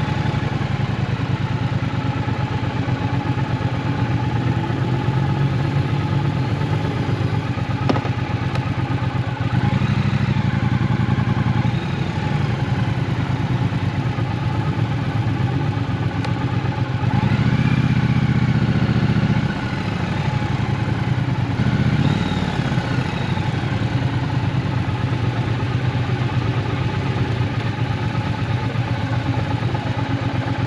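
Triumph Bonneville T120's 1200 cc parallel-twin engine idling at low speed, with a few short rises in revs. The longest and loudest rise lasts about two seconds, a little past the middle.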